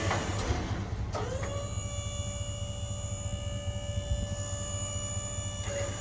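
Electric hydraulic pump of a dump trailer running with a steady whine, spinning up about a second in and then holding one pitch. A low rumble runs underneath.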